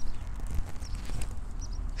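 Bypass pruning secateurs working on rose canes: a snip right at the start, then a few faint clicks and rustles as the blades are set on another cane, over a steady low rumble.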